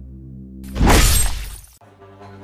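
Film score: a low droning music bed, broken a little under a second in by a sudden, very loud crashing, shattering sound effect that fades over about a second and then cuts off abruptly, before a new droning tone comes in.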